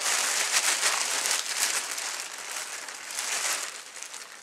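Plastic bag rustling and crinkling as groceries are handled, most intense in the first couple of seconds and dying down near the end.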